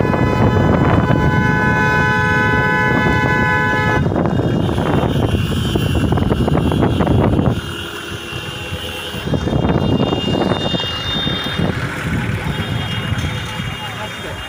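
Vehicle horns held down in long, steady blasts, several at once, with the set of horn pitches changing about four seconds in and again around nine seconds. Voices and vehicle noise sound underneath.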